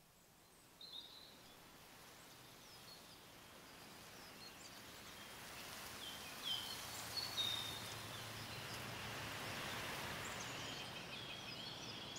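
Faint outdoor background hiss that slowly grows louder, with small birds chirping here and there, more of them about halfway through.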